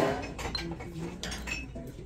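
Glazed ceramic candlestick clinking against other pottery on a store shelf as it is picked up and turned over, with a sharp knock at the start and lighter clatter after.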